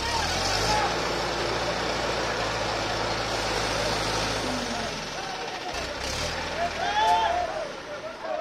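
Mobile crane's diesel engine running steadily under load as it hoists an elephant in a sling, with a broad hiss over it. The engine sound drops away about six seconds in, and people's voices follow.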